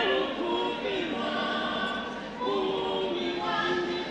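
A church choir singing, holding long notes. One phrase ends and the next begins about two and a half seconds in.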